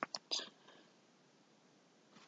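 A few faint, breathy voice sounds, like a soft whisper or breath with a mouth click, in the first half second. Then silence.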